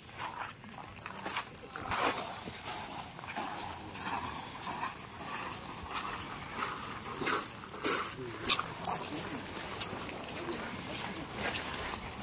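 Outdoor garden ambience. An insect's steady high buzz stops about two seconds in, then a bird's short high rising chirp repeats every two seconds or so, with a few louder short sharp sounds and murmuring voices under it.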